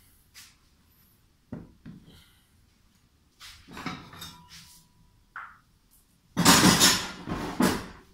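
Steel tubing and metal clamps being handled and set on a steel welding table: scattered clanks and knocks, then a louder stretch of rough clattering in the last second and a half.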